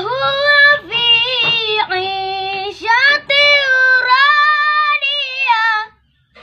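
A young boy's high voice in melodic Quran recitation, long held notes with gliding ornaments in several phrases broken by short breaths. The voice stops abruptly near the end.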